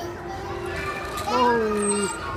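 Background hubbub of children playing and people talking, with one voice holding a long, slightly falling call from about a second and a half in.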